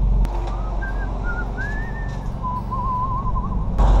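A person whistling a short wavering tune over the steady idle of a freshly rebuilt 1600cc air-cooled VW flat-four engine. There is a single click shortly after the start, and the engine grows louder again near the end.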